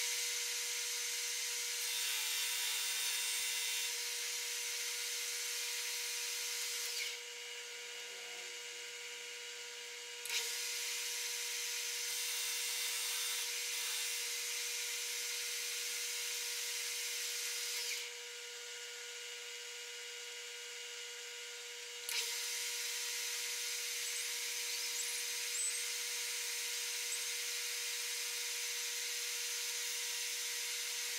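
Metal lathe turning down the outside diameter of a metal bar: a steady whine from the running lathe with the hiss of the cutting tool. The cutting hiss drops away twice for a few seconds between passes, leaving the whine.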